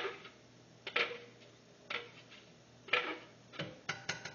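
A blender jar is knocked against the rim of a metal stockpot about once a second to shake out the last of the mole sauce. Each knock rings briefly and fades.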